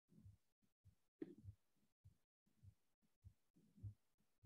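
Near silence on a video call: room tone with faint low sounds that come and go.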